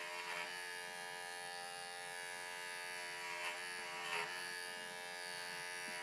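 Cordless electric hair clipper running steadily with a buzzing hum as it trims thick angora rabbit wool, its tone shifting slightly a few times as the blades work through the wool.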